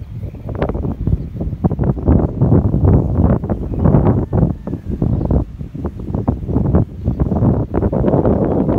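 Wind blowing across the microphone in uneven gusts, a loud, rough low noise with no steady tone.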